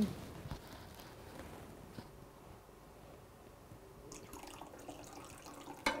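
Liquid poured from a glass jar into a metal dye pan, trickling faintly from about two-thirds of the way in, with a single light click earlier on.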